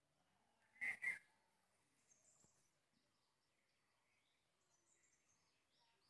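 Near silence with faint, high bird chirps, broken about a second in by two short sounds in quick succession.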